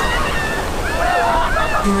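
Ocean surf washing onto a sandy beach, a steady rushing noise with wind buffeting the microphone. Faint high voices of people in the water call out over it about halfway through.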